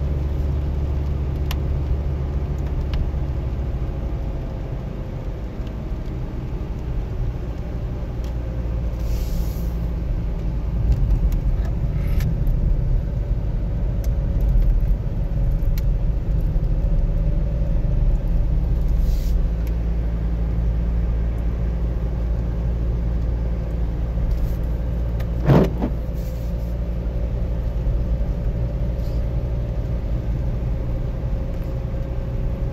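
Car driving on a wet road heard from inside the cabin: a steady low engine and tyre drone. A single sharp knock sounds once near the end.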